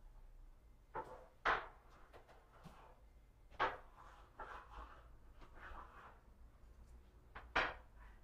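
A few sharp knocks and clacks, three of them louder than the rest, with soft rustling between: objects being handled and set down on a workbench.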